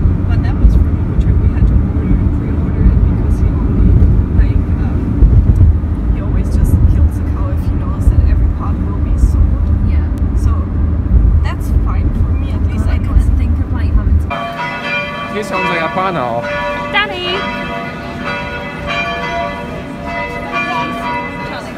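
Car interior road and engine noise, a heavy steady low rumble while driving at speed. It cuts off abruptly about fourteen seconds in, and church bells ring over the bustle of a city street.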